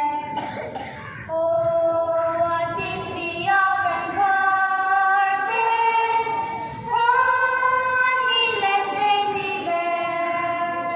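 A small group of schoolgirls singing a prayer song together into one microphone, holding long notes in a single melody. There is a short break for breath just after the start, then the singing resumes.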